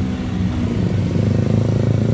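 Road traffic: a vehicle engine running close by, its hum swelling louder from about halfway through as it draws nearer.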